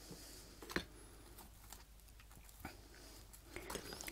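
Quiet room with a few faint taps and handling sounds as toasted sandwich triangles are put down on a plate.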